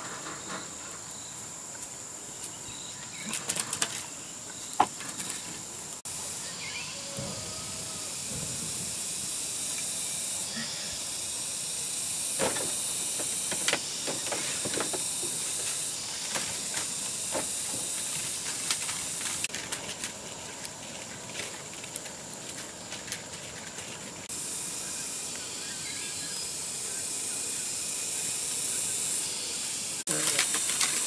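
A steady high-pitched hiss that grows louder for two stretches of about five seconds, one in the middle and one near the end, with scattered light knocks and taps.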